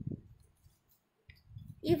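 A woman's voice briefly at the start, then a quiet pause with a few faint clicks, and she starts speaking again near the end.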